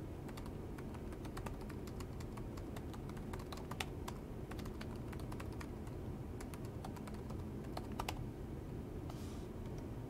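Typing on a System76 Oryx Pro laptop keyboard: a run of quick, irregular key clicks that stops about eight seconds in.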